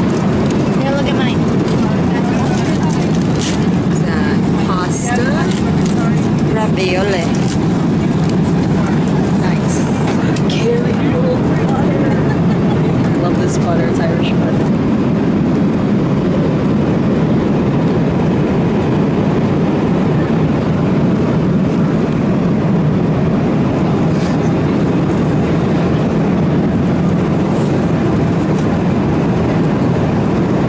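Jet airliner cabin noise in flight: a steady, even low rush of engines and airflow. Small clinks and rustles from a meal tray come and go through the first half.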